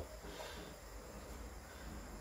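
Quiet room tone with no distinct sound.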